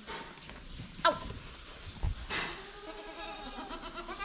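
Alpine goat kids bleating, crying as they still do weeks after being weaned off milk: a short call about a second in, then one long, steady bleat through the second half.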